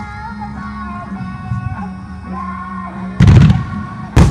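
A pop song with a sung vocal plays over a fireworks display; about three seconds in, a loud boom from the burst of very large aerial firework shells (2-shaku, 24-inch) cuts in and dies away over about half a second.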